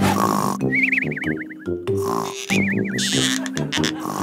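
Comic cartoon snoring sound effect: a low rasping snore on the in-breath, then a high wavering whistle on the out-breath, heard twice over light background music.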